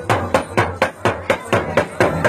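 Hand percussion keeping a fast, steady beat of sharp strikes, about six a second, during a break in the devotional singing.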